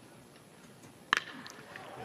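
A single sharp crack of a baseball bat driving the ball, about a second in: a hard-hit ball to left field, over faint ballpark background.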